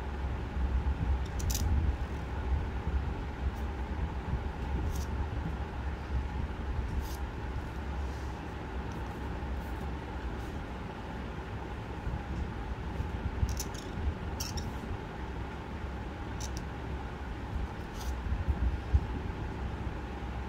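Reed calligraphy pen scratching on paper in short strokes, a handful of brief scratches spread through, over a steady low background rumble.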